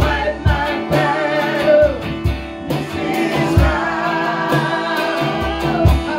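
Live gospel worship song: a man sings and plays electric guitar while a woman sings along. Low thumps keep a steady beat of about two a second underneath.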